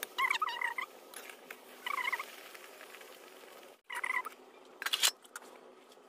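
Short chirping animal calls, three of them, each a quick pair of notes, over the faint steady sizzle of oil frying in an iron wok. A brief noisy rush comes about five seconds in.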